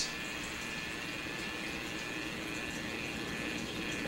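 Steady background hiss with faint, even high-pitched tones underneath, with no distinct sound event: room tone on the narration's microphone.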